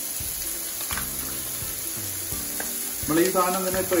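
Sliced shallots and diced bacon sizzling steadily in a non-stick frying pan over a gas flame.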